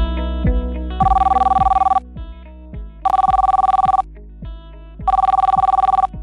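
Phone ringing with an incoming call: three rings about a second long and a second apart, each a fast-trilling ring on two pitches. Plucked-guitar background music plays under the rings.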